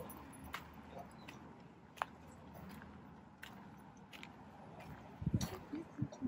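Quiet open-air background with a few scattered light clicks and taps, then a short run of low, muffled thumps about five seconds in.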